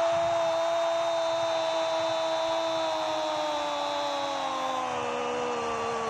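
A football commentator's long held 'Goooool' goal call, one sustained shout whose pitch slides slowly lower and that breaks off about six seconds in, over steady stadium crowd noise.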